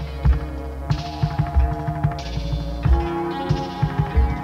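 Minimal synth music from a 1986 home-taped cassette. An electronic beat alternates a heavy low thump and a burst of hissy high noise, each coming about every second and a third. Held synth tones and small ticking hits run in between.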